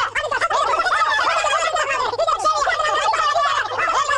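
A dense babble of many cartoon voices chattering over one another in wordless, warbling gibberish, pitches darting up and down without pause.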